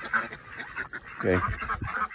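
A flock of domestic ducks quacking, a scatter of short calls.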